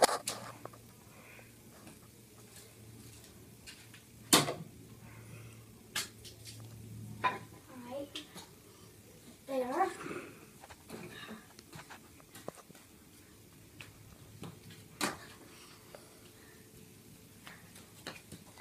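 Plastic fly swatter slapping in scattered single sharp hits a few seconds apart, the loudest about four seconds in, over a low steady hum. A child's voice is heard briefly around the middle.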